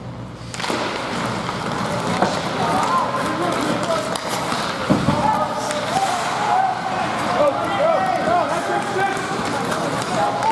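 Ice hockey game in play: players and spectators shouting and calling over the hiss and clatter of skates and sticks in the rink. A sharp knock sounds about five seconds in.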